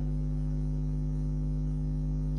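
Steady electrical hum with several tones stacked on it, unchanging throughout, with no other sound.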